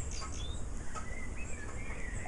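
Small birds chirping and calling on and off, over a steady low rumble.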